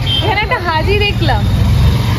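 Voices talking over a steady low rumble of road traffic, which grows a little louder near the end.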